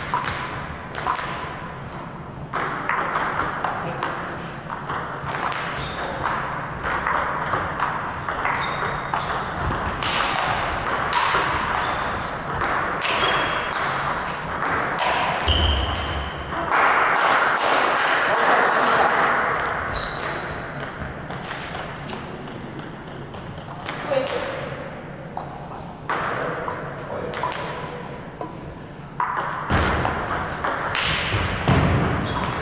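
Table tennis ball clicking back and forth off rubber paddles and the table through several rallies, with voices loudest in the middle.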